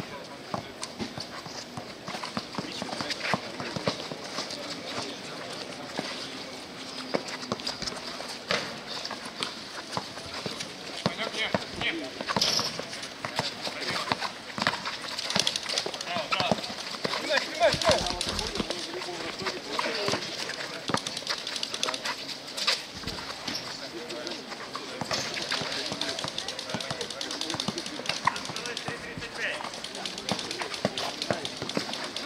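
A basketball being dribbled and bounced on an outdoor court, with repeated sharp bounces mixed with the scuff and slap of sneakers as players run. Players' voices call out indistinctly throughout.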